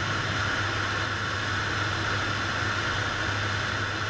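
Cockpit drone of a PAC Cresco agricultural turboprop in level flight: a steady low hum from the engine and propeller with the hiss of airflow over it, unchanging throughout.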